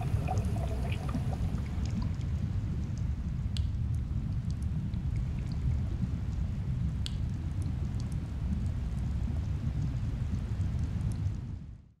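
Underwater ambience: a steady low rumble with scattered faint clicks, fading out at the very end.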